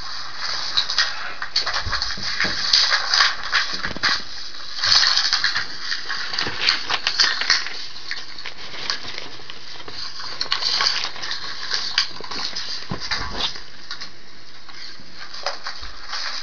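Paper rustling as the pages of a ring-binder printout are handled and turned, in several crackly bursts with quieter stretches between.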